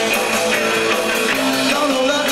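A live rock band playing: electric guitar and bass over a drum kit, the drums striking steadily under sustained guitar notes.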